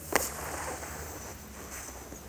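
A long, steady hissing in-breath drawn through a tongue curled into a tube: the sitali cooling breath. A small mouth click comes just at the start.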